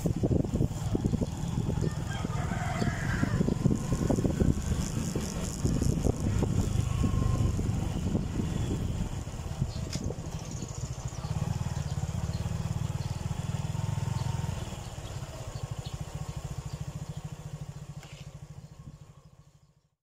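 Suzuki Gixxer 155's single-cylinder engine running as the bike rolls slowly, with wind on the microphone. About halfway through it eases off, settles to a softer, evenly pulsing idle in neutral, and fades out near the end.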